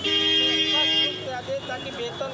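A vehicle horn sounds in one steady blast about a second long, then cuts off, over a crowd of voices talking in the street.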